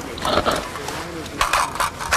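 Metallic clicks of a rifle being handled as a magazine is put in, with a quick cluster of sharp clicks about a second and a half in.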